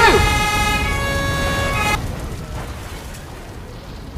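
A vehicle horn held on a steady, multi-tone blast for about two seconds, cutting off sharply. A fainter low rumble follows and fades.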